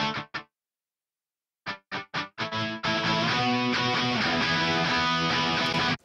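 Heavily distorted electric rhythm guitar played through the Grind Machine II amp-simulator plugin. A held chord cuts off sharply into dead silence, then about five short staccato chugs lead into sustained chords. The hard cut to silence is the plugin's noise gate at work.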